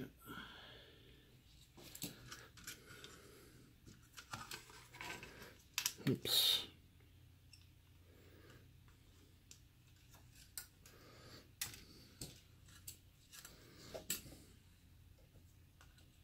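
Clicks, taps and scrapes of a router circuit board being handled and turned over on a bench mat, with a louder cluster of knocks about five to six seconds in and only scattered ticks after that. A faint steady low hum runs underneath.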